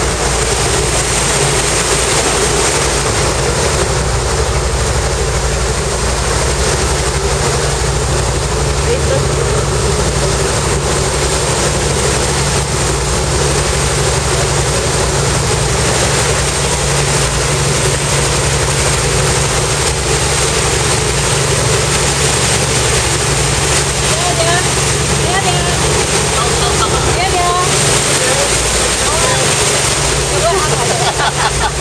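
Boat's engine running steadily under way, with the rush of its wake and wind on the microphone. Voices come in faintly near the end.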